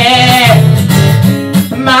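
A man singing live with his own strummed acoustic guitar: a held, wavering sung note opens, strummed chords carry the middle, and the voice comes back in near the end.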